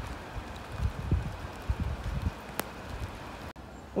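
Outdoor ambience: a steady soft hiss like light rain, with irregular low thumps on the microphone and a single faint tick about two and a half seconds in. The sound cuts off abruptly just before the end.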